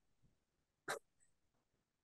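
Near silence broken once, about a second in, by a short breathy puff of air through the nose or mouth, like a stifled laugh.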